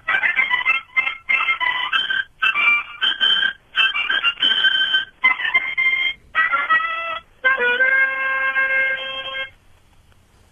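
Harmonica played over a call line that sounds thin and cut off in the treble: a run of short, breathy chords broken by brief gaps, ending in one long held chord near the end.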